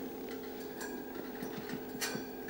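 A faint steady hum of two even tones, with a few faint soft ticks, in a pause between spoken phrases.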